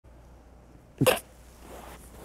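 A single short, loud burst from a person's voice about a second in, over quiet room tone.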